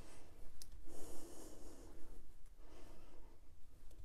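A person breathing close to the microphone in soft, slow breaths, with a light click about half a second in, while paper is pressed down by hand.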